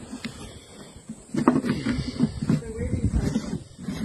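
Knocks and scrapes on a red plastic drum as its lid is held down and secured, with indistinct voices.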